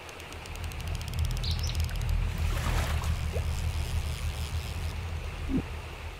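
Outdoor river ambience: steady rushing water with a low rumble, and a few brief bird chirps.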